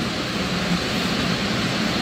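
Steady, even background rush of room noise with no distinct events.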